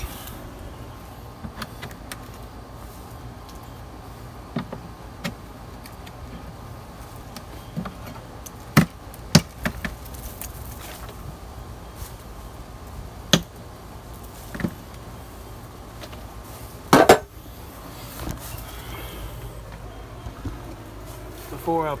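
Vinyl soffit panels being pried loose with a flat metal tool: scattered sharp clicks and cracks over a steady low background noise, the loudest crack coming late.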